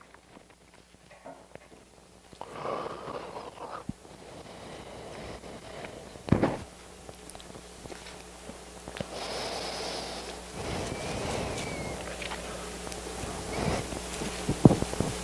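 Quiet pause in a large room: faint rustling and handling noises, with one short sharp thump about six seconds in.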